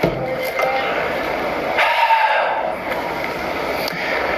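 Television audio picked up in the room: a steady hiss-like haze with a faint, muffled voice in it.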